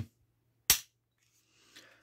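Polymer 80 PFC9 pistol giving one sharp metallic click as it is dry-fired during a function test, followed by a much fainter click near the end.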